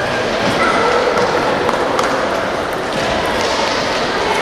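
Murmur of spectator chatter, with a few sharp, isolated clicks of a table tennis ball.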